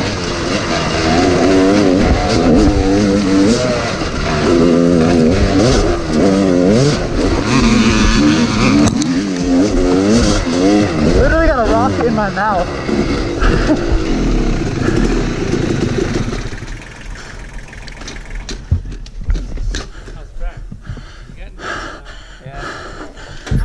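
Yamaha YZ250 two-stroke single-cylinder dirt bike engine being ridden on a trail. The revs rise and fall constantly as the throttle is worked, with a sharper rev about halfway through. The engine then drops to low running for the last few seconds as the bike slows, with scattered clicks.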